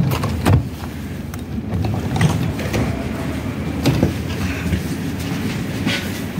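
Passenger train carriage: a steady low rumble with scattered clicks and knocks.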